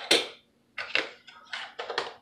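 A plastic measuring spoon scooping sea salt from a small container and tipping it into a drink: a few short scrapes and clicks.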